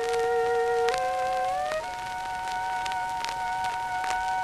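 Flute and violin playing together in held notes, stepping to new notes about once a second, on a 1910 Columbia acoustic disc recording, with the disc's surface crackle throughout.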